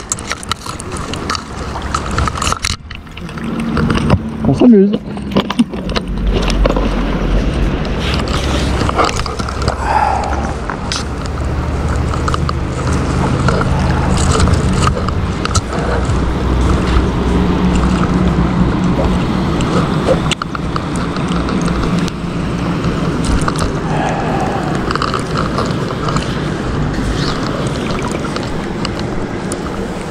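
Steady rush of river water around a wading angler's legs, with wind rumbling on the body-worn microphone and occasional knocks from handling the rod and line.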